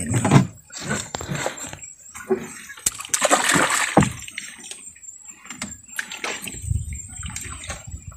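Water splashing and sloshing at the side of a small boat as a gill net with a snagged patin (river catfish) is hauled up, in irregular bursts, the loudest about three to four seconds in.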